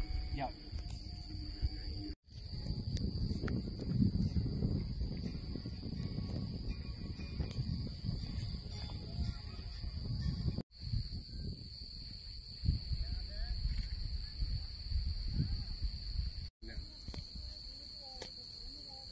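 Wind buffeting the microphone with a low rumble, over a steady high-pitched drone of insects in the grass. The sound drops out briefly three times.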